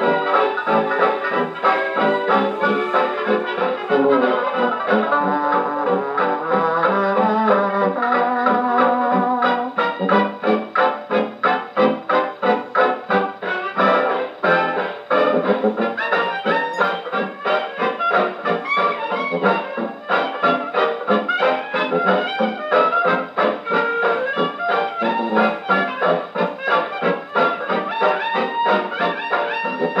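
A worn 1935 shellac 78 rpm dance-band record played acoustically on a 1926 Victor Credenza orthophonic Victrola with a soft tone needle. It is an instrumental passage led by brass over a steady beat, with the narrow, thin range of an acoustic gramophone. The beat grows more pronounced from about ten seconds in.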